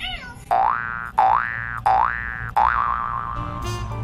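Cartoon-style sound effect: four quick rising whistle glides in a row, the last one ending in a wobbling warble that holds its pitch.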